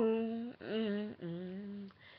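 Unaccompanied solo voice humming the song's closing notes: three held notes, each a little lower and quieter than the one before, with short breaths between them.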